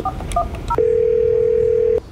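Office desk phone being dialled: three quick touch-tone keypad beeps, then a steady tone on the line for about a second.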